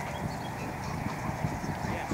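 Horse trotting on sand arena footing: a steady series of low hoofbeats, a few to the second.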